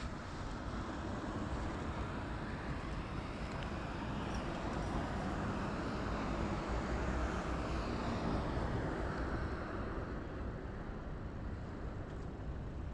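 Steady wind and road rush from a camera mounted on a moving bicycle, swelling slowly to its loudest about two-thirds of the way in and easing off again, as a car passes.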